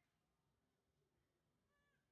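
Near silence, with only very faint curved, pitched calls barely above the noise floor.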